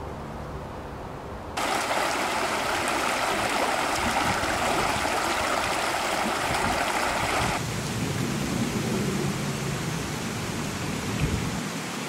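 Shallow rocky brook running fast over stones, a steady rush of water. It cuts in abruptly about a second and a half in and turns lower and softer about halfway through.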